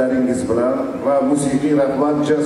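A man's voice, going on without a break.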